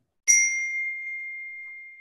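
A single bright ding about a quarter second in, its clear tone ringing on and slowly fading.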